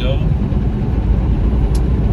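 Steady, low engine and road noise of a semi truck, heard from inside the cab while driving.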